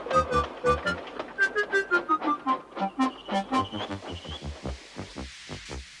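Background music: a quick melody of short notes stepping up and down over a pulsing bass line with light ticks, thinning out and growing quieter over the last couple of seconds.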